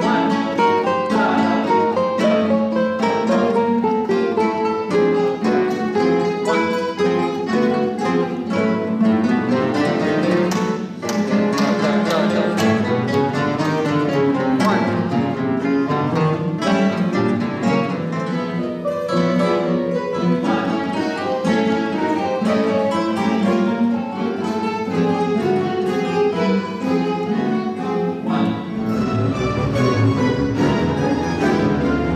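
Plucked-string orchestra of classical guitars and mandolins playing a busy passage of quick, short notes, with a brief drop in level about eleven seconds in. Deeper bass notes come in near the end.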